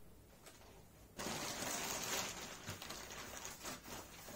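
Clear plastic packing sheet crinkling and rustling as it is handled during unboxing, starting about a second in and running on steadily.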